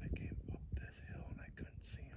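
Hushed whispering between two men, over a low, uneven rumble on the microphone.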